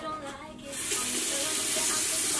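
Bathroom tap turned on and running into the sink, a steady hiss that starts about a second in, over faint background music.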